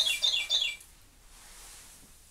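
A clock's bird-chirp chime: a run of identical, quick falling chirps, about four a second, that stops a little under a second in, leaving a quiet room.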